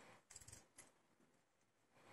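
Faint metallic clicks of steel tweezers working pins inside a disassembled lock cylinder's plug, a short cluster of a few ticks in the first second, then near silence.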